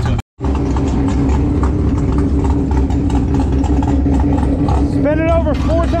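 Drag car engine cranking over steadily on its starter with a spark plug out and a compression gauge threaded into that cylinder, turning over for a compression test on a cylinder suspected of running hot. A voice calls out near the end.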